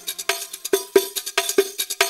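Percussion break in an oriental dance track: a run of sharp hand-percussion strikes, about four or five a second, with the bass and melody dropped out.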